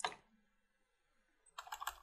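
Computer keyboard being typed on: a single keystroke at the start, then a quick run of several keystrokes near the end.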